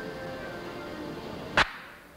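Background music playing, broken by a single short, sharp crack near the end, the loudest sound here.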